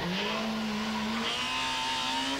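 Skoda kit car rally car's engine running at steady revs on a tarmac stage, its note holding level and dipping slightly about halfway through.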